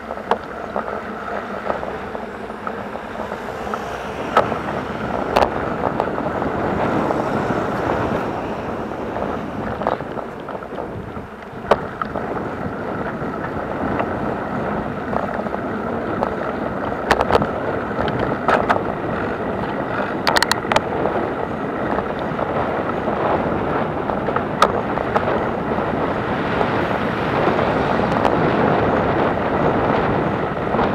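Wind rushing over an action camera's microphone on a moving ride along city asphalt, mixed with road rumble and sharp clicks and knocks every few seconds from bumps and rattles; the rush grows a little louder toward the end as speed picks up.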